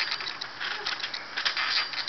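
Trampoline springs and mat clicking and creaking at an irregular pace under people bouncing on it.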